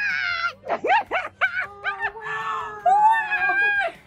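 A woman squealing and screaming with excitement. A few short, high squeals come about a second in, then a longer scream that lasts almost to the end.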